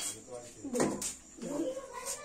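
A young child's voice making three short wordless whiny sounds, the last one rising and then falling in pitch.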